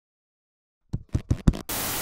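Silence, then about a second in a quick run of four sharp clicks, followed by a loud burst of television-static hiss as a sound effect.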